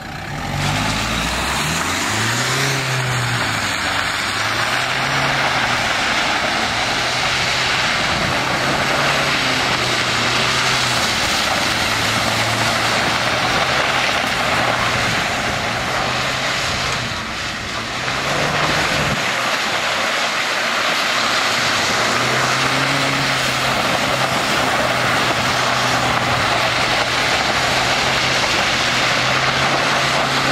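Renault Duster 4WD's engine revving up and down as the car skids and drifts on wet mud, over a steady rushing noise. The engine note rises and falls in repeated swells, drops briefly just past halfway, then holds steadier.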